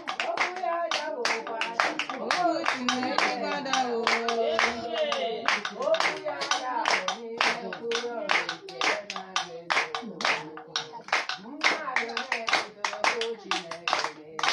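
Group of worshippers singing a song together with steady rhythmic hand clapping, about three claps a second.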